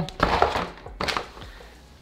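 Cardboard packaging and paper accessories being handled and set aside: a rustling thump just after the start, then a lighter knock about a second in.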